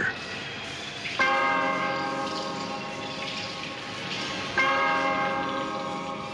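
A bell tolls twice, once about a second in and again a little past four seconds, each stroke ringing on and slowly dying away.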